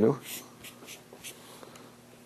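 Marker writing Hebrew letters on a flip-chart paper pad: a series of short, scratchy strokes at uneven spacing.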